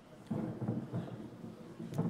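A sudden low rumbling noise sets in about a third of a second in and carries on with uneven loud swells, with a sharp click near the end.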